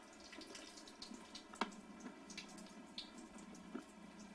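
Faint trickle and drip of a thin stream of water from a bathtub faucet, with a few sharp ticks, the loudest about one and a half seconds in.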